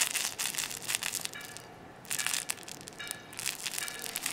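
Crinkly plush baby toy being shaken and squeezed by hand, giving an irregular crackling rustle, with a couple of brief high tones mixed in.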